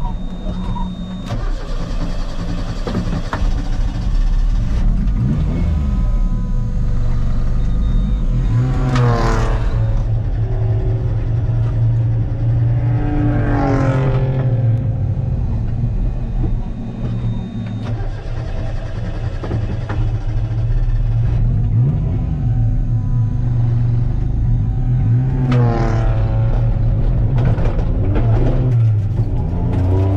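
Kei race car's small 660 cc engine heard from inside the cabin while lapping, a steady drone with the revs climbing and dropping several times, clearly at about nine, fourteen and twenty-six seconds in.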